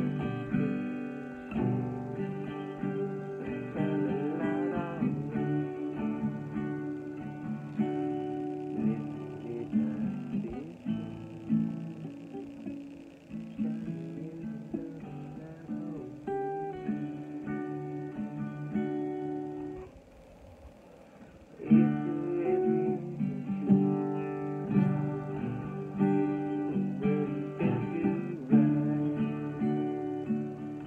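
Acoustic guitar strummed in chords, stopping briefly about two-thirds of the way through and then resuming.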